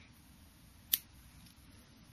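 A single sharp click a little under a second in, over faint background hiss.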